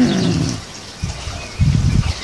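A dog grumbling: a moaning vocal sound that falls in pitch at the start, then a short low rough grumble near the end. It is the dog's begging noise, pestering for food.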